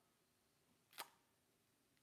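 Near silence, room tone, broken by a single short click about a second in.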